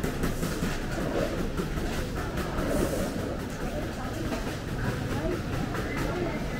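Street ambience in an open-air market lane: a steady low rumble with scattered background voices and light clatter.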